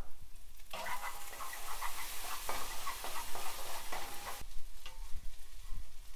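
Fried rice sizzling in a frying pan while it is stirred with a wooden spatula, with light scraping and tapping. The sizzle swells about a second in and drops back a little past four seconds.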